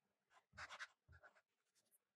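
Faint scratching of a fine-tip pen writing on a grid-paper sketchbook page: a few short strokes in two small clusters, starting about half a second in.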